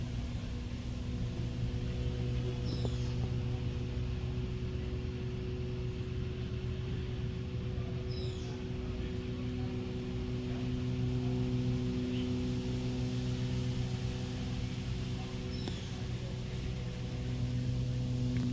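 A steady low mechanical hum with an even pitch, like a motor or compressor running, with three faint high chirps about 3, 8 and 16 seconds in.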